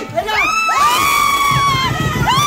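Excited high-pitched shrieking and cheering from several people: short calls, then one long held shriek of about a second and a half that rises at the start and drops away at the end.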